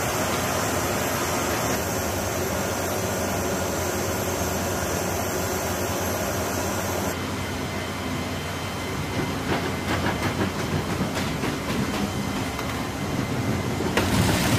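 A loaded cargo pallet rolling over the floor rollers of a C-17 Globemaster III's cargo bay: a rumbling rattle with quick irregular clacks, in the second half. Before a cut about halfway through there is a steady rushing noise.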